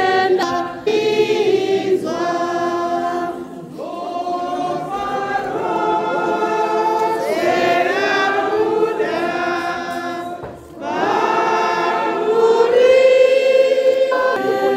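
A church congregation singing a hymn together, many voices on long held notes, in phrases with short breaks about a second in, near four seconds and about ten and a half seconds in.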